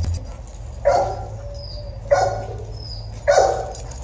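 A dog barking three times, evenly spaced a little over a second apart.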